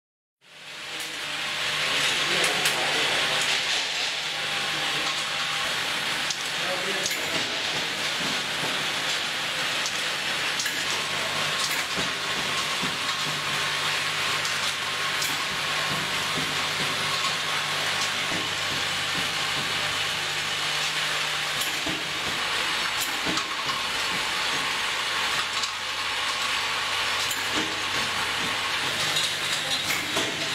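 Bottle filling line running: a steady machine hiss over a low motor hum, with scattered clicks of small amber glass bottles knocking against each other and the steel guides.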